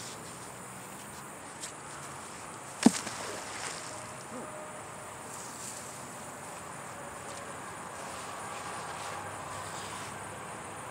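A 4,200-pound-pull neodymium fishing magnet hits the water with one sharp splash about three seconds in. Insects chirr steadily in the background.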